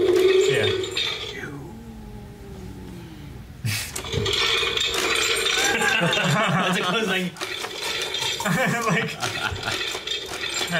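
Electronic sound effects from a toy Infinity Gauntlet's built-in speaker: a held tone, then sounds falling in pitch, then a sudden burst about four seconds in.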